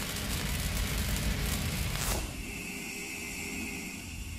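Cinematic logo-intro sound effects: the rumbling tail of a boom, a falling whoosh about two seconds in, then a quieter steady hum as the logo fades.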